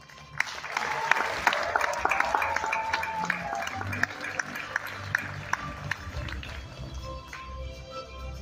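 Audience applauding, starting about half a second in and thinning out toward the end, over background walk-up music.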